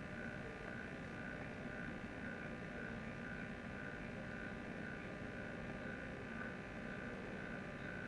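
Low steady hiss and hum of a lecture-hall microphone feed, with a faint high tone pulsing about twice a second. The uploader says the microphone was not working properly.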